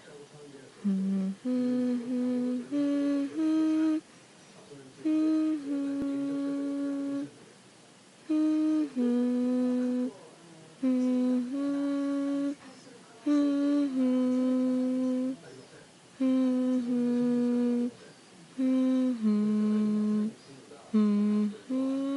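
A person humming a slow, soft lullaby tune in short phrases of two or three long held notes, with brief pauses between phrases.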